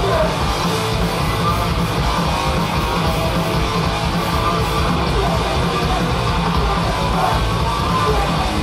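Hardcore punk band playing live at full volume: distorted electric guitars, bass and drums in a steady, dense wall of sound.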